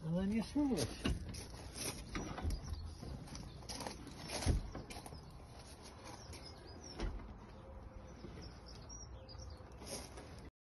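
Van seat on a swivel base being moved by hand: a few knocks and clunks from the metal seat frame, the loudest about four and a half seconds in. A brief voiced sound rises and falls in pitch at the very start.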